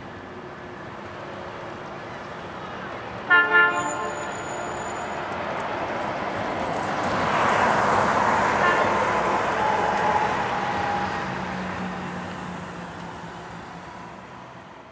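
Canadian Pacific GP20C-ECO diesel locomotive sounding two short horn toots about three seconds in, then the train rolling past with wheel and rail noise that swells to its loudest about midway and fades away.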